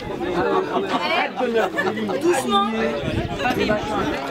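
Chatter of a group of people: several voices talking over one another.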